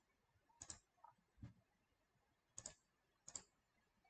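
Faint clicks at a computer desk: four sharp clicks, two of them doubled, with a duller low knock about a second and a half in, over near silence.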